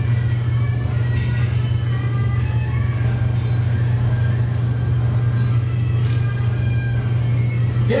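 A loud, steady low hum, like a motor or electrical drone, with faint voices behind it and a brief click about six seconds in.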